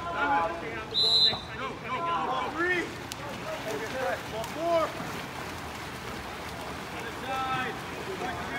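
A short, high referee's whistle blast about a second in, amid scattered shouts from players and spectators and the splashing of swimmers in the pool.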